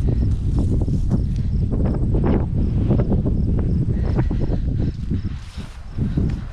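Wind buffeting the microphone with a heavy low rumble, and footsteps through dry grass making irregular soft knocks and rustles; the wind eases a little near the end.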